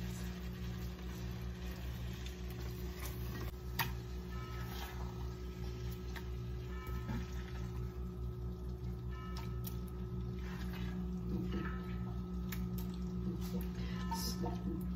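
A silicone spatula scrapes and taps as thick meat sauce is scooped out of a cast-iron skillet and dropped into a glass baking dish, making scattered soft clicks and scrapes. Under them runs a steady low hum.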